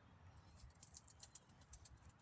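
Near silence: faint outdoor ambience with a run of soft, light ticks in the second half.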